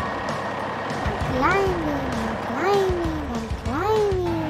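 A person's voice making engine noises for a toy truck being pushed along: three "vroom"-like sounds, each rising quickly and then sliding down in pitch, about a second apart.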